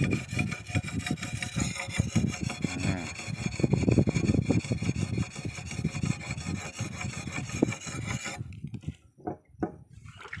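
Sharpening stone rubbed in repeated back-and-forth strokes along the edge of a dodos, a steel oil-palm harvesting chisel, working off rust and paint. The strokes stop about eight and a half seconds in.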